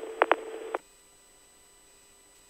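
Tail of a police two-way radio transmission: an open channel hiss with a steady hum and two short clicks, cutting off sharply just under a second in as the transmission drops, leaving only faint hiss.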